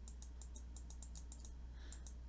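Computer mouse button clicked rapidly and repeatedly, about five clicks a second, stepping a web page's image loop forward frame by frame; the clicks stop shortly before the end. A steady low hum runs underneath.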